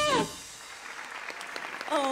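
A live band's last held note slides down in pitch and cuts off a quarter second in, followed by faint audience applause.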